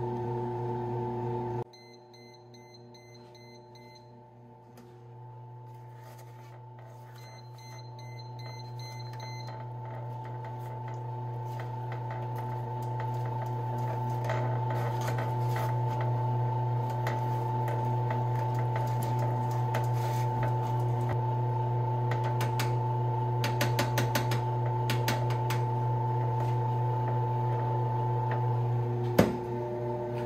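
Cuisinart bread machine beeping: two runs of rapid, short, high beeps, its signal to scrape down the jam. Later, a spoon scrapes and clicks against the metal bread pan as the marmalade is stirred, a steady low hum builds up underneath, and a single knock comes near the end.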